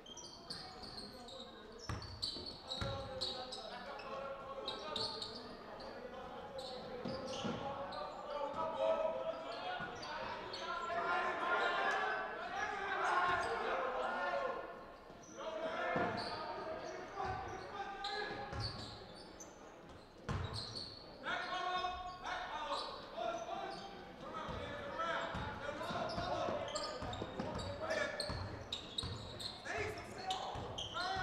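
Indoor basketball game: a basketball bouncing on the gym floor amid players' and spectators' voices and calls, echoing in the large hall.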